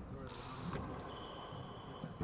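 Faint indoor court ambience: distant voices and a few light knocks, with a thin, steady high tone that starts just before the middle.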